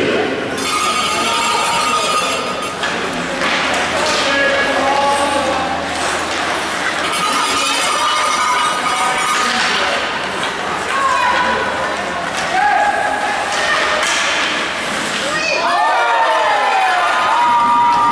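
Ice hockey game sounds in a rink: voices calling out over the play, with scattered knocks and clacks of sticks and puck.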